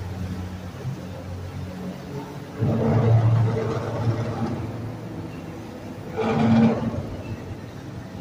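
Boat engines running on the river with a steady low hum. Two louder surges of engine noise come in, one about two and a half seconds in and a shorter one about six seconds in.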